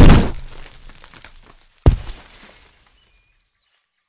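Two cartoon impact sound effects: a loud crash at the start with a crackling tail of about a second and a half, then a single sharp knock a little under two seconds later.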